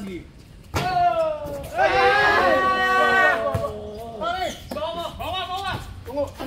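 A man's long, drawn-out shout, held for about a second and a half and sliding slightly down in pitch, with short shouted calls after it. It comes just after a single sharp knock of the basketball about a second in.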